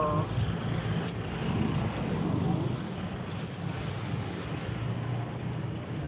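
Street traffic passing close by: a small truck, motorcycles and cars running, heard as a steady low rumble.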